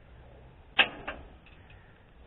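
Socket wrench working a thermostat housing bolt on a V8 engine: two sharp metallic clicks a third of a second apart, the first the louder, then a few faint ticks.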